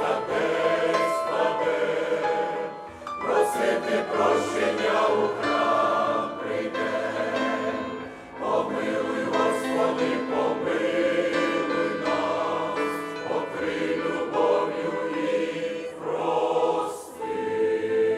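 Mixed church choir of women's and men's voices singing a sacred hymn in harmony, in long sustained phrases with short breaks about three and eight seconds in.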